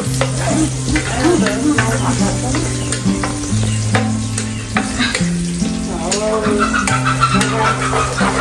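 Minced garlic sizzling in hot oil in a wok, with a metal ladle scraping and clicking against the pan as it is stirred.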